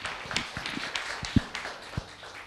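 Scattered audience clapping, a thin irregular patter of claps, with a few dull thumps mixed in.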